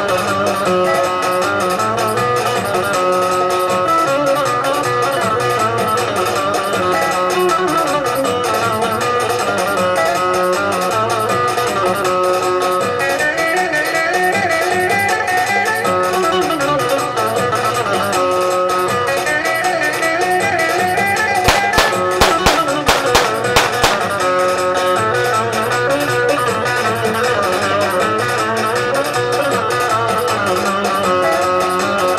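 Music led by a fast-picked plucked string instrument, going on steadily. About two-thirds of the way through, a brief run of several sharp knocks cuts across it.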